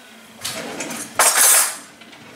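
A kitchen drawer pulled open with the metal utensils inside it rattling and clinking: a softer rustle first, then a loud clatter lasting about half a second.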